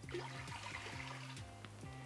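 Cold tap water poured from a measuring cup into a stainless steel Instant Pot inner pot, a faint trickle under soft background music.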